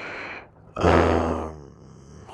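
A man's breathy exhale, then a loud, low grunt about a second in that fades away.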